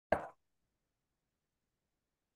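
A single short pop, about a quarter second long, just after the start, followed by complete silence.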